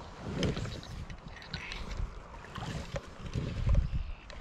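Water sloshing and splashing close to the microphone, with wind gusting on it in irregular low rumbles, the strongest near the start and again near the end.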